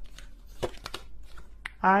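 A few light clicks and rustles of oracle cards being handled and drawn from a deck, then a woman's voice starting near the end.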